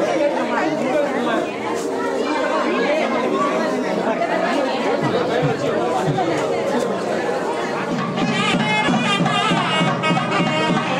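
Many people talking at once, a busy crowd chatter, with music joining in near the end.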